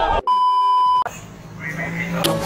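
A single steady electronic beep tone, edited in and lasting just under a second. It cuts in over shouting voices and stops abruptly.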